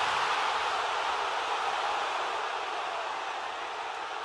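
A steady rushing hiss with no distinct events in it, slowly fading over the few seconds.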